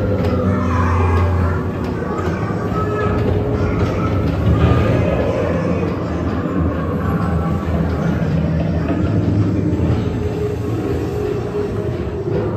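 The ride's background music over a steady low rumble of the Haunted Mansion's Doom Buggy ride vehicles moving along their track.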